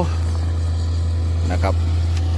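SANY SY205C hydraulic excavator's diesel engine running under working load with a steady low drone while its bucket digs into the rock face.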